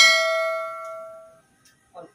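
A bell chime from a subscribe-button notification sound effect rings out once and fades away over about a second and a half.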